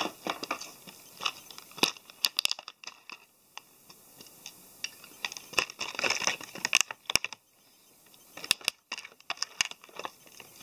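Clear plastic packaging of model-kit parts crinkling and rustling in hands, with scattered sharp clicks, and two quieter spells about three seconds in and near eight seconds.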